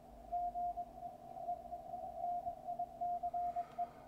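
A Morse code (CW) signal on the 20-meter amateur band, heard through a ham radio receiver as a tone of about 700 Hz keyed on and off in dots and dashes over faint band noise.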